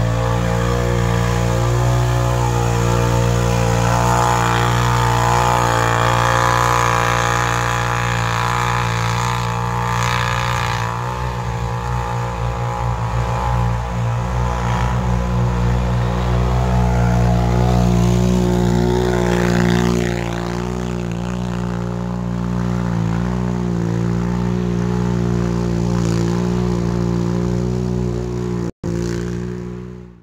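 ATV engines held at high revs as the tyres spin through soft, churned mud, running steadily with small swells in pitch and level. The sound cuts out briefly near the end.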